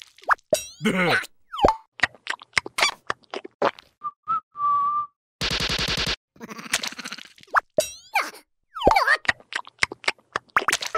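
Cartoon sound effects and wordless squeaky character vocalizations: a string of quick plops, boings and sliding squeaks, a short whistled note about four and a half seconds in, then a rapid buzzing rattle lasting just under a second.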